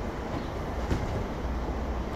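A steady low rumble with a faint even hiss over it.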